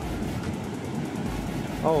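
Rough sea surf breaking on a sandy beach, a steady wash of noise.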